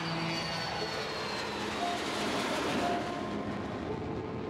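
Jet aircraft engine roar that swells and then eases off, with a thin whine falling in pitch over the first two seconds.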